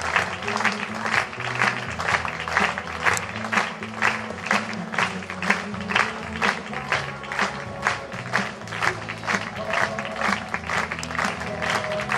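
An audience clapping in unison, about two to three claps a second, in time with music that has a bass line.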